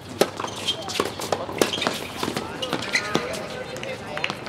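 Tennis balls struck by rackets in a quick doubles point: a serve and then a string of sharp, separate hits, with voices shouting in the second half.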